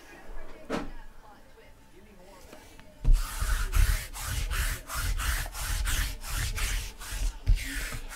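Sticky lint roller rolled across a tabletop: a rubbing crackle, about three or four crackles a second over a dull rumble. It starts about three seconds in and stops just before the end.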